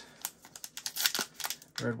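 Clear plastic cello wrapper of a trading-card pack crinkling and tearing as it is opened by hand, in a quick run of crackles and clicks.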